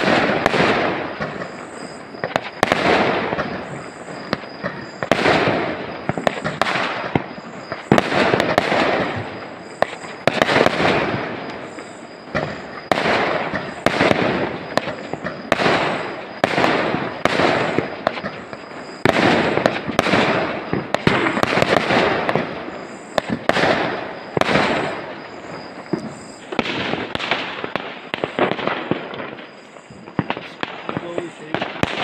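Aerial fireworks shells bursting one after another, a dense series of sharp bangs, many in quick succession, with crackling between them.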